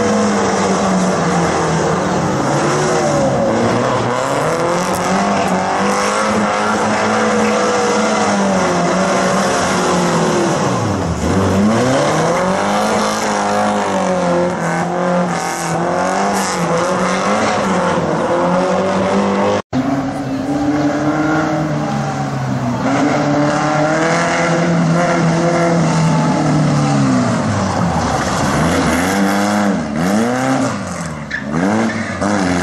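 Classic BMW 02-series four-cylinder engine revving up and easing off again and again as the car is driven hard around a tight cone course. After a brief dropout about two-thirds in, an air-cooled VW Beetle flat-four revs and backs off in the same way.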